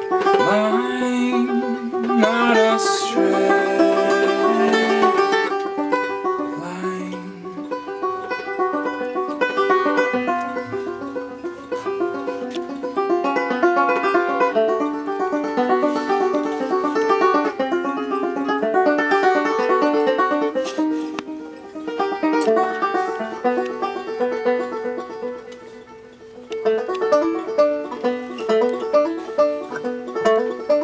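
Open-back banjo picked in an instrumental stretch of a folk song. Near the end the music dips quieter for a moment, then sharp, evenly spaced plucked notes come back strongly.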